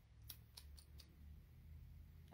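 Near silence: quiet room tone with four faint, quick clicks in the first second.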